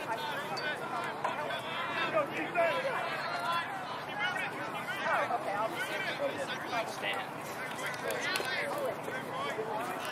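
Overlapping voices of sideline spectators talking, with no words clear enough to make out.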